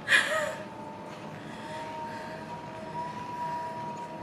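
A short breathy burst from the woman at the start, like a laugh or gasp, then a steady faint background with a thin high whine that rises slightly in pitch, from the elliptical trainer she is pedalling.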